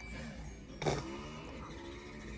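Faint handling and rustling noise from a phone moving over bedding, with a brief louder rustle just under a second in, over a low steady hum.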